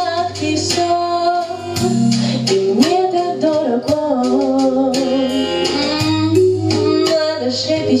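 A woman singing a slow blues-style pop song into a handheld microphone, holding and bending long notes over a recorded backing track with bass and guitar.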